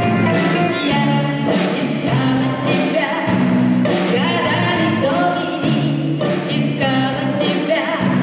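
A woman singing into a microphone, accompanied by a chamber string orchestra of violins and cello, in a Russian rock song arranged for chamber orchestra, with a steady beat.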